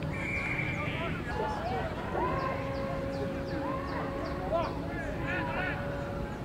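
Open-air ambience at a rugby ground: distant voices of players and spectators shouting and calling, with a short high steady tone near the start and a long drawn-out tone through the middle.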